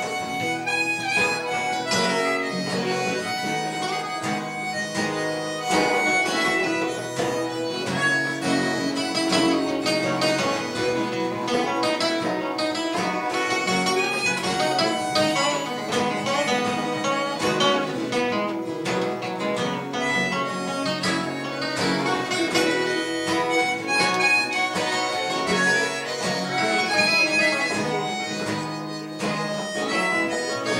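Harmonica playing a lead over strummed acoustic guitars and a banjo during an instrumental break in an acoustic folk song.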